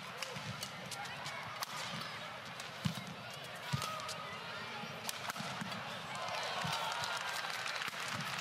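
Badminton singles rally: several sharp racket hits on the shuttlecock and short squeaks of court shoes, over the steady background noise of an arena crowd.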